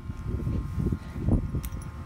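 Rustling and handling noise close to the microphone, with a light click a little past halfway, as a leather halter with a metal ring is handled at a horse's head.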